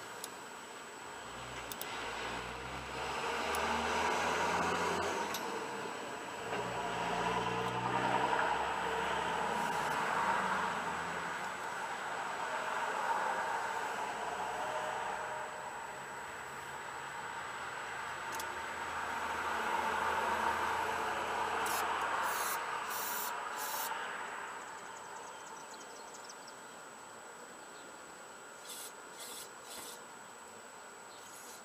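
Cloth rubbing and brushing right against the microphone, a rough rustle that swells and fades in several long waves, with a few sharp clicks about three quarters of the way through.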